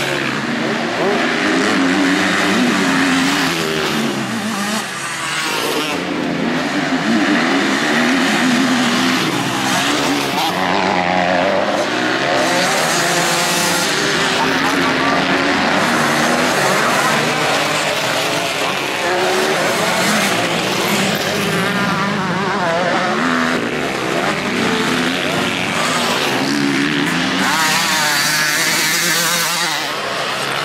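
Several motocross dirt bikes racing on a dirt track, their engines revving up and falling back again and again as riders accelerate out of corners and over jumps.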